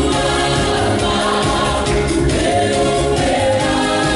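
Gospel song with group singing over a backing with a steady bass beat.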